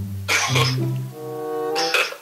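Background music with a low bass line, broken by two short breathy vocal bursts, one about a third of a second in and one near the end, with a brief held voiced sound between them.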